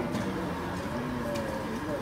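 Indistinct voices murmuring in a café, a steady background of chatter with no clear words.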